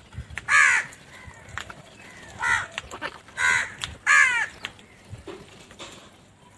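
House crows cawing: four loud, harsh caws spread over a few seconds, the last two close together, with light ticking in between.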